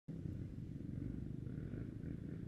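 Dirt bike engine idling, a steady low rumble.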